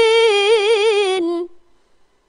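A woman reciting the Qur'an in the melodic tilawah style, holding one long drawn-out note with a quick wavering ornament, which stops about a second and a half in.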